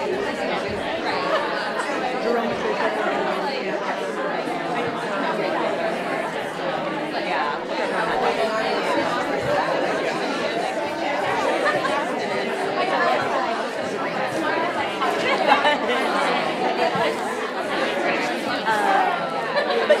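Many people talking at once: a steady babble of crowd chatter, with no single voice standing out.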